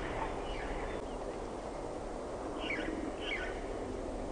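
Outdoor ambience: a steady background hiss and low rumble, with a few short bird chirps, two clearer downward chirps near the end.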